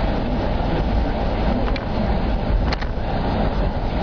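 Steady road and engine noise inside a moving car's cabin, a low even rumble.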